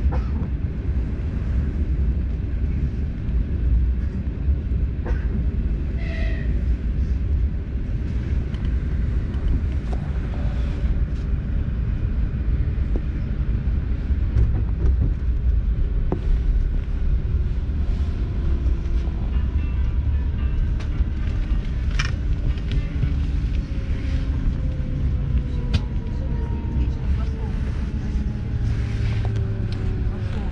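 ES2G 'Lastochka' electric train heard from inside the carriage: a steady low rumble of the wheels on the track, with a few light clicks. In the second half, faint whines slide down in pitch as the train slows into the station.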